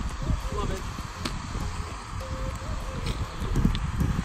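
Faint, indistinct voices over a low, uneven rumble of microphone noise, with one sharp click a little over a second in.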